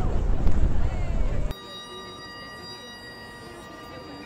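Loud wind rumble on the microphone among a crowd. After about a second and a half it cuts to a Highland bagpipe played in the street, quieter, its drones and chanter holding steady notes.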